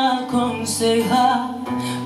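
A woman singing a Spanish-language ballad into a microphone, accompanied on acoustic guitar, in a live performance.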